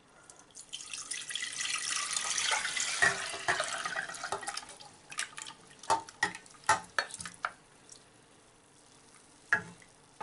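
Prunes in mulled wine poured from a glass bowl into a stainless-steel saucepan: a splashing, gurgling pour of about four seconds, then a run of sharp knocks and scrapes as a wooden spoon works the last prunes out and stirs them in the pan.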